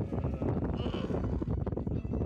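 Young dromedary camels making rough, low distress calls while they are held down with their legs being tied, with a brief higher cry about a second in.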